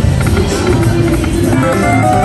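Loud, steady music, with a few short chiming tones in the second half.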